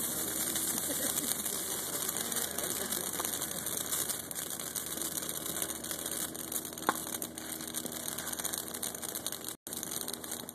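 Wooden pallets burning in an open fire: a steady hiss with dense fine crackling, and one sharp pop about seven seconds in.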